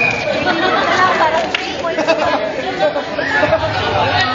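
Several people talking over one another in lively group chatter, with a couple of short sharp clicks.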